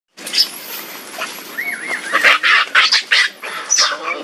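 Macaques screaming during a chase and attack: a short wavering squeal, then a run of harsh, loud screams, about three a second, through the second half.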